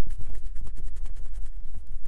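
Paintbrush being wiped dry: a fast run of scratchy rubbing strokes over a low rumble.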